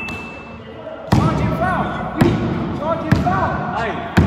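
Basketball bouncing on a wooden sports-hall floor, about once a second, four bounces with the hall's echo after each.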